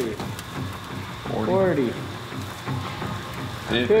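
Fine gold dust being poured from a pan into a stainless steel tray on a digital scale.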